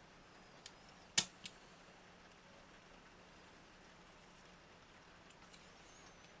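A sharp click about a second in, with two fainter clicks just before and after it and a few faint ticks near the end, as a plastic snap-off craft knife is worked against a steel rule to score paper fold lines with the back of the blade; otherwise faint steady hiss.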